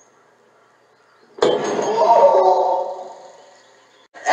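A brass door knocker struck against a wooden door: a sharp metallic clink about a second and a half in, followed by a wavering ringing tone that fades out over about two seconds.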